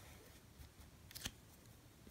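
A brief, scratchy scrape about a second in: a plastic scraper card drawn across a metal nail-stamping plate, wiping the polish over the engraved design. Otherwise near silence.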